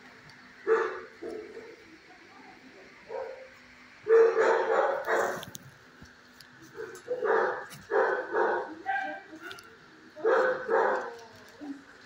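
Dogs barking in a kennel: short barks come in several clusters, the loudest about four seconds in, over a steady faint background hum.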